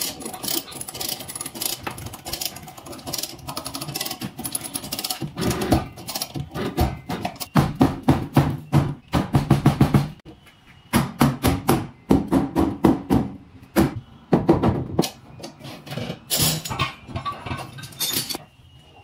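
Rapid runs of blows from a rubber-faced mallet on a car's collision-damaged rear body panel and frame rail, struck while a clamp and pulling chain hold the rail under tension to straighten it. The blows come in fast bursts, heaviest in the middle, with short pauses between.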